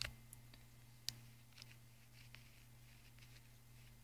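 Near silence: room tone with a low steady hum and a few faint clicks, the sharpest about a second in.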